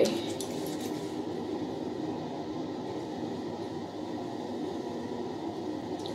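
A steady, low background hum and rumble with no distinct events.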